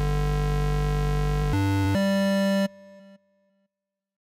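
Steinberg Retrologue software synthesizer on its 'Chirrleader' preset playing a sustained, bright, buzzy note. The pitch steps up about one and a half seconds in and again at about two seconds. The note cuts off abruptly near the three-second mark, with a brief quieter tail.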